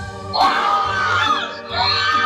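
A person screaming in fright at a jump scare: a loud, high-pitched, wavering scream starts about half a second in, breaks off, and a second one starts near the end, over background music.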